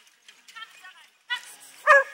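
Short pitched calls from voices or a dog, ending in one sharp, loud call near the end.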